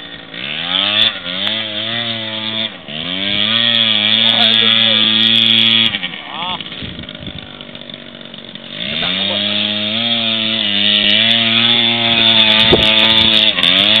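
Small motor scooter engine revving up twice in quick succession, then running at high, steady revs. About six seconds in it drops back to a lower, quieter idle, and a few seconds later it climbs again and holds high revs.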